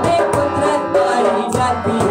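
A devotional song performed live: male voices singing over sustained harmonium chords, with quick, steady hand-drum strokes keeping the beat.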